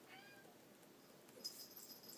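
A cat meows once, short and faint, just after the start. From about a second and a half in, a felt-tip marker squeaks and scratches on paper.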